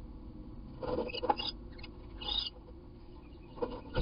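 A wren moving about inside a wooden nest box, its scuffs and scratches on the wood coming in short bursts, one about a second in and more near the end, with a short higher-pitched sound about two seconds in.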